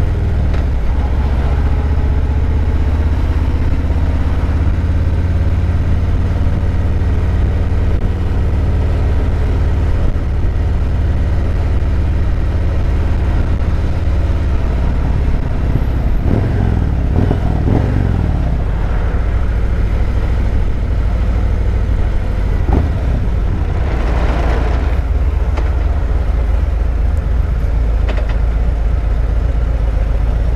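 Harley-Davidson Road Glide's Milwaukee-Eight 107 V-twin running at low road speed in slow traffic, a steady deep rumble heard from the rider's seat. A few brief rises and falls in the sound come midway, and a louder swell of noise comes about four-fifths of the way through.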